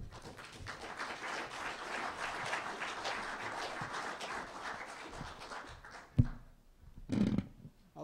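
Audience applauding, a dense patter of many hands clapping that fades away after about six seconds. A single sharp thump follows near the end.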